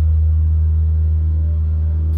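A loud, sustained low bass note from a live band, held steady as one deep drone with no singing over it.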